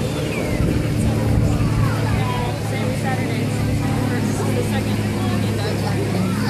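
An engine running steadily with a low, even hum, under the chatter of people talking.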